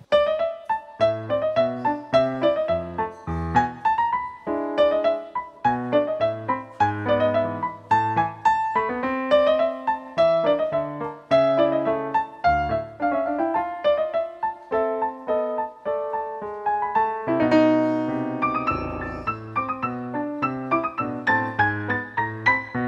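Solo piano playing an instrumental tango: a busy run of struck chords and melody notes over a bass line, with a longer held, rolling passage about two-thirds of the way in.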